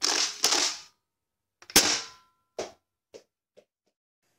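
Channel-logo intro sting made of gunshot-style sound effects: two quick sharp bursts at the start, a single loud crack a little under two seconds in with a short ringing tone after it, then three small fading clicks.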